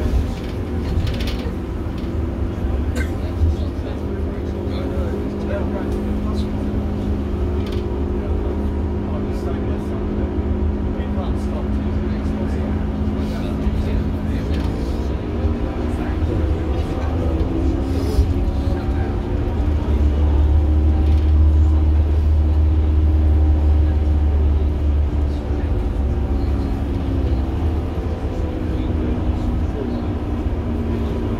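Ailsa double-decker bus's front-mounted diesel engine running under way, heard from inside the lower saloon. Its pitch holds steady, then rises and grows louder from about halfway as the bus accelerates, and eases back near the end.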